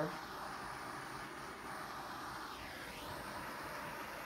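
Handheld gas torch burning with a steady hiss, its flame played over wet epoxy resin to heat it so the resin moves.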